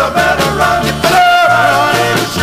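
Early-1960s R&B combo record playing an instrumental passage: a lead melody line that bends and holds a note, over a bass line and a steady drum beat.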